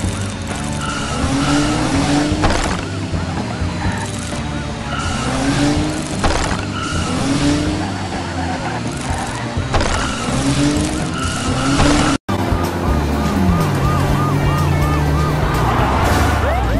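Cartoon car-chase sound effects: a toy car's engine running with tyre skids and squeals, over background music.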